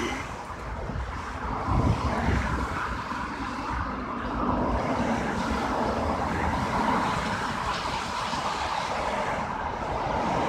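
Road traffic passing on a multi-lane road: a steady rush of tyre and engine noise, with wind rumbling on the microphone.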